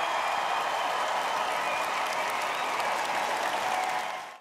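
A large audience applauding and cheering, a dense steady clatter of clapping.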